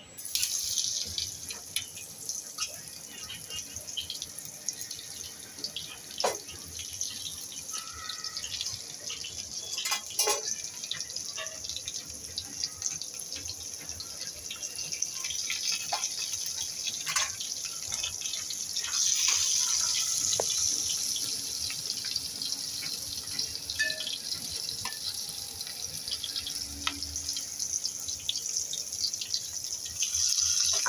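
Stuffed okra frying in hot oil with mustard seeds: a steady sizzle with scattered pops and crackles, swelling a little louder past the middle.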